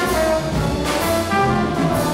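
Live hard-bop jazz band: the horns, saxophone and trombone, holding sustained notes together over upright bass, piano and drums, with a cymbal crash about a second in.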